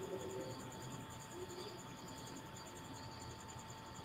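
Faint background sound with no speech: a rapid, regular high-pitched pulsing like an insect trill, over a steady faint tone and low background noise.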